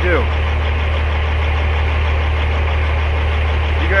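Semi truck's diesel engine idling: a steady low rumble with an even pulse.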